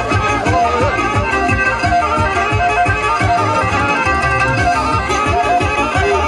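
Black Sea horon dance music led by a kemençe, the small bowed fiddle, playing a busy melody over a steady beat.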